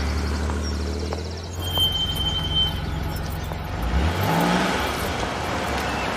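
SUV engine running at a low steady idle, then revving up briefly about four seconds in as the vehicle moves. A short, thin high squeal comes about two seconds in.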